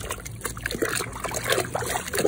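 Muddy water in a washing basin sloshing and splashing as a hand works a toy clean in it, with irregular small splashes and trickles.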